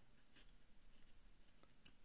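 Near silence with a few faint soft brushes and slides: trading cards being thumbed across one another in a hand-held stack.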